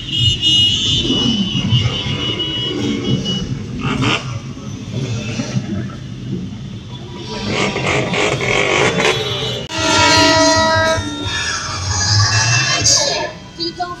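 A large crowd of motorcycles running in a dense pack, engines rumbling and swelling now and then, with several horns honking together in long held blasts from about ten seconds in.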